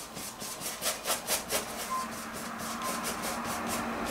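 Number eight paintbrush scrubbing paint onto a toothy canvas in cross-hatching strokes: short scratchy rubs, about four a second at first, then a steadier brushing.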